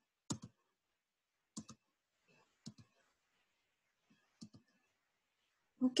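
Four short, sharp computer mouse clicks about a second or so apart, each a quick double tick, with near silence between them.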